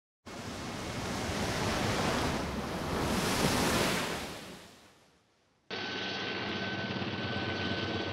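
Logo sound effect: a rushing noise like wind or surf swells for a few seconds, then fades away to silence. About three-quarters of the way in, a steady hiss and low hum with a faint high whistle starts abruptly.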